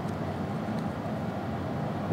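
Steady low background hum and hiss, basement room tone with no distinct events.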